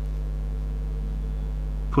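Steady low electrical hum, like mains hum, with no other sound.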